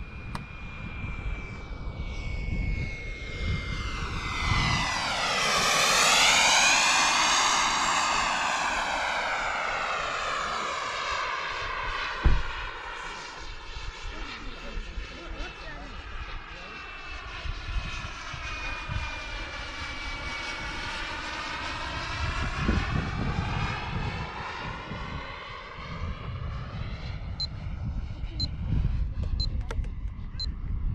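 Small gas turbine jet engine (Xicoy X-45) of an RC model jet whining in flight, its pitch sweeping down and back up as the jet makes a low pass, loudest about six seconds in. A second, longer and quieter pass follows, with wind rumble on the microphone, a sharp knock about halfway through and a few short beeps near the end.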